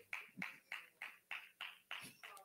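Faint hand-clapping in an even rhythm, about three claps a second, over a low steady hum.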